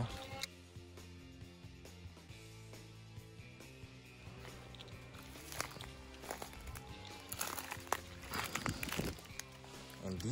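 Background music of held low notes that change every second or so. Over it come scattered crunches and rustles of footsteps in dry leaf litter, thicker in the second half.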